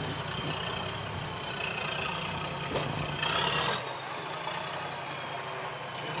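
Toyota FJ40 Land Cruiser's engine running low and steady at crawling pace, with a brief louder burst a little after three seconds in.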